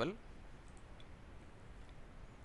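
The last syllable of a man's word, then a quiet steady hum and hiss from a desk microphone, with one faint click about a second in: a computer mouse click placing the cursor in a code editor.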